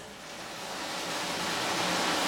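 Water rushing and churning in a hydroponic nutrient tank as the system circulates, a steady rushing noise that grows steadily louder.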